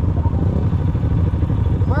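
ATV engine running steadily at low speed, a deep even engine sound with no revving.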